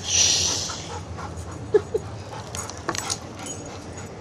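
A dog whimpering briefly, two short faint notes about two seconds in, with a short rush of hiss at the start and a few light clicks.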